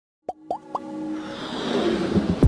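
Logo intro sound effects: three quick rising pops in the first second, then a swelling whoosh over a held music tone that builds toward the end.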